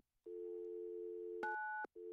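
Telephone dial tone, a steady tone that starts about a quarter second in, broken about one and a half seconds in by a single touch-tone keypad beep lasting under half a second, after which the dial tone comes back.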